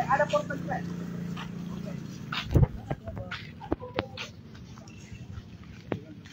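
A few short, high-pitched yelping calls in the first second, then scattered knocks and clicks, the loudest a single thump about two and a half seconds in.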